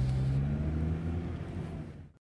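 Sports car's engine and exhaust rumbling as it pulls away, steadily fading out.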